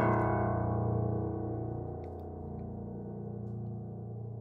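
Piano chord struck once and left to ring, slowly fading over a held low bass note.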